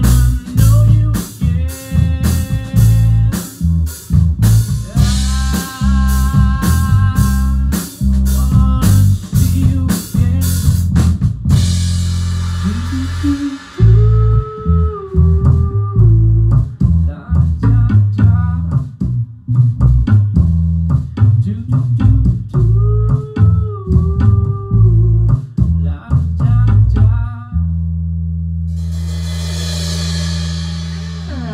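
Live rock band playing an instrumental passage: drum kit keeping a steady beat under electric bass and sustained, bending guitar lines. About two-thirds of the way through a cymbal crash and brief break interrupt the beat, and near the end the drums stop, leaving a held chord ringing.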